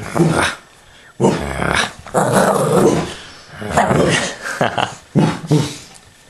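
Shih Tzu puppy growling in play, in about five rough bursts with short pauses between them, the longest lasting about a second and a half.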